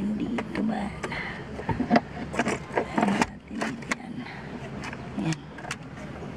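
A car battery's plastic case knocking and scraping against the metal battery tray and bracket as it is set into place: a string of sharp, irregular knocks and clicks.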